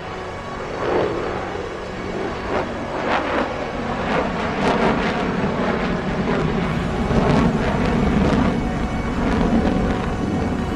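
Dramatic background music, with the low rumble of Concorde's Olympus turbojet engines swelling under it in the second half as the airliner flies in on approach.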